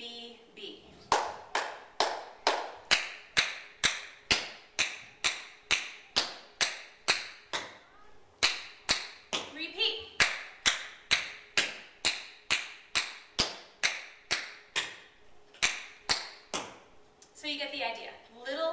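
Metal tap shoes striking a wooden floor in an even run of single sharp taps, about two to three a second, with a short pause about eight seconds in: simple beginner tap steps danced in time.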